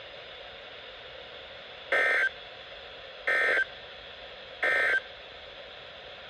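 Three short, buzzy data bursts about 1.3 s apart from a First Alert WX-150 weather radio's speaker, with steady radio hiss between them. They are the NOAA Weather Radio SAME end-of-message code, closing the Required Weekly Test.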